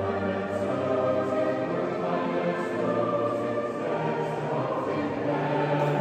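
An ensemble rehearsing a 16th-century polyphonic piece, several sustained parts overlapping in the echo of a large stone church.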